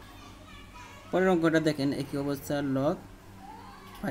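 A child's high-pitched voice for about two seconds, starting about a second in, over a low steady hum.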